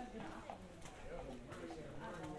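Footsteps on stone steps, hard-soled clicks at a walking pace, under nearby people talking in Italian.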